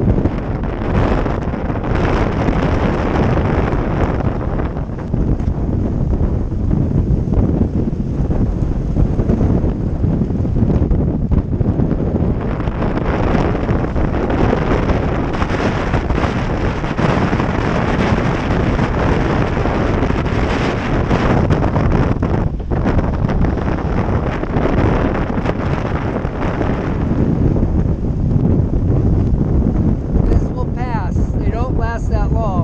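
Strong storm wind buffeting the microphone in gusts that swell and ease, over the rush of rough, whitecapped water around a sailboat.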